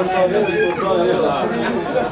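People talking, several voices overlapping.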